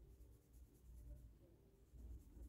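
Very faint soft brushing: a fluffy brush sweeping excess chrome powder off a gel-polished nail tip, with short light strokes that are barely above near silence.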